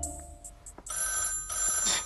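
A telephone bell starts ringing about a second in, a steady continuous ring.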